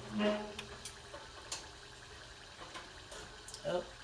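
Faint bubbling sizzle of an egg roll deep-frying in a pot of hot oil, with a few small pops.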